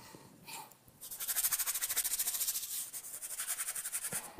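Bristle brush scrubbing oil paint onto a stretched canvas in quick, short back-and-forth strokes, several a second. It starts about a second in and stops near the end.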